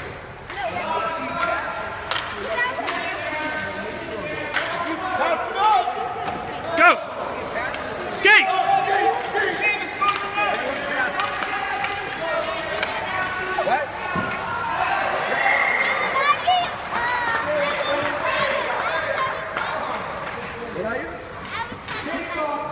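Overlapping voices of spectators and players talking and calling out through a youth hockey game, with two sharp knocks about a second and a half apart near the middle.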